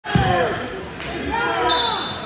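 People in the stands shouting and talking, with a thump at the very start. Near the end comes a short steady high whistle: the referee's whistle starting the wrestling bout.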